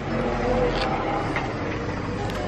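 Steady outdoor street noise with a low rumble, as of traffic.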